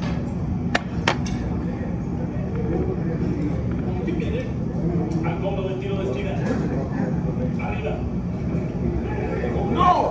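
Background speech throughout, with two sharp knocks about a second in from a glass beer bottle being set down on a table.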